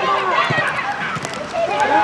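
Several high voices shouting and calling out over one another during youth football play on a pitch, with a dull thud about half a second in.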